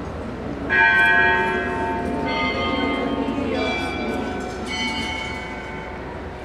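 Bells struck four times, each strike a different pitch left ringing, about one every second and a half: the bells rung at the elevation of the chalice during the consecration at Mass.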